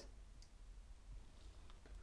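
Near silence: room tone with a few faint, short clicks as a round card is handled and set down on the table.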